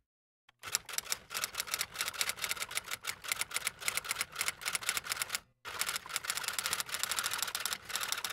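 Rapid typing keystrokes, a quick run of sharp clicks several times a second. They break off briefly about five and a half seconds in, then resume.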